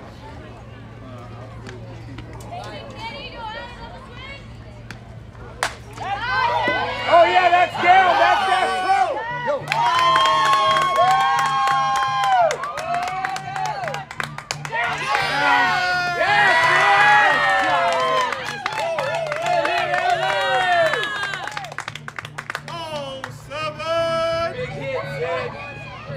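A single sharp crack about six seconds in, then high-pitched voices of spectators and players yelling and cheering together, with long held shouts, for most of the rest, dying down near the end. A low steady hum runs underneath.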